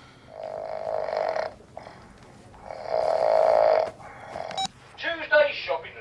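A person snoring: two long snores, the second louder than the first. A short stretch of voice follows near the end.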